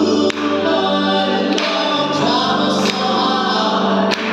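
Gospel vocal trio, two women and a man, singing in harmony into microphones, with hand claps on the beat about every 1.3 seconds.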